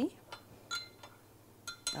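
A metal spoon clinking against the sides of a glass measuring cup while stirring Kool-Aid drink mix into water: about five light clinks, each with a short ring, the closest pair near the end.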